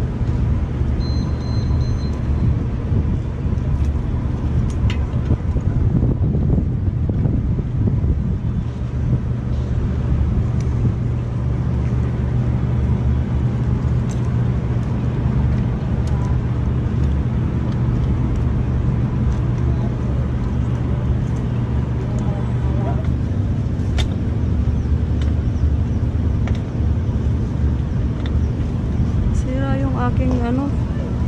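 A motor vehicle engine running steadily at idle, a low even hum that does not change.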